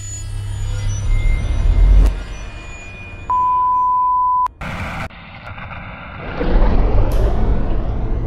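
Intro sound effects: a low rumble swelling up to a sharp click about two seconds in, then a steady beep lasting about a second, in the manner of a film countdown leader. A short burst of noise follows, then a deep rumbling swell builds near the end.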